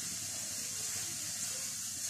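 Steady hiss of a gas stove burner flame heating a saucepan of milk.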